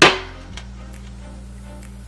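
A single sharp clink as a glass vase is set down on a hard glass tabletop, ringing briefly. Steady background music plays underneath.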